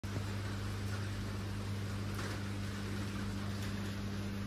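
Steady rain falling on a wet concrete patio, an even hiss with a few faint drips, under a steady low electrical or mechanical hum.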